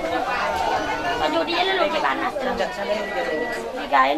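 Many people talking at once in overlapping chatter, with no single voice standing out, over a faint steady high tone.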